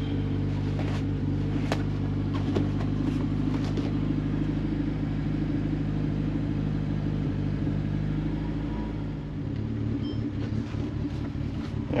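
1968 BMW 1600's 1.6-litre four-cylinder engine idling steadily, heard from inside the cabin, with a few light clicks in the first few seconds. About nine seconds in, the engine note drops and changes.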